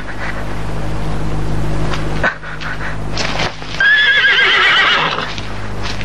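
A horse whinnying: one high, quavering call about four seconds in that lasts about a second and a half. Before it a steady low hum runs on the soundtrack and stops about two seconds in.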